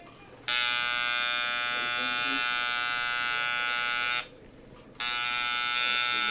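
Tattoo machine buzzing steadily while inking skin. It starts about half a second in, stops for under a second a little past the middle, then starts again.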